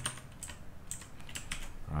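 Typing on a computer keyboard: a handful of irregularly spaced keystrokes.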